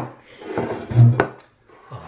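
Objects knocking on a wooden tabletop: a sharp click at the start, a dull low thump about a second in and another sharp click right after it.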